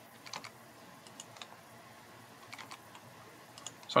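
Computer keyboard keys being pressed: a handful of faint, scattered clicks spread over several seconds, as lines of text are broken with the Enter key.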